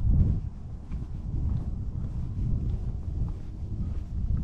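Wind buffeting the microphone of a pole-mounted 360° camera: a low, uneven rumble that swells and fades.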